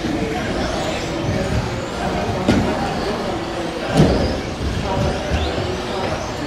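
Electric 1/10-scale RC stock buggies racing on an indoor track: high motor whines rise and fall as the cars accelerate and brake, with two sharp knocks about two and a half and four seconds in. The hall is reverberant.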